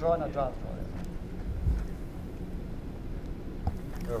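Indoor hall ambience with a steady low hum. A brief voice is heard at the very start, and a soft low thud about halfway through.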